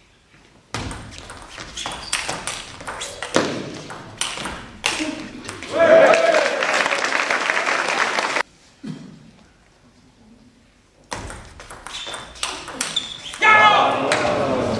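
Table tennis rally: the ball clicking sharply off the rackets and table, echoing in a large hall. About six seconds in, the point ends and shouting and applause break out. After a short lull, more ball clicks and shouting start near the end.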